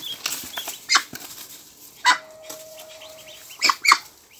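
Muscovy duck flapping its wings in bursts as it is held and set down on straw, with rustling of straw and feathers. The loudest flaps come about a second in, at two seconds and just before the end.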